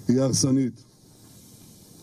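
A man speaking a short phrase into a handheld microphone, ending in a hissing 's' sound less than a second in, then a pause with only faint background noise.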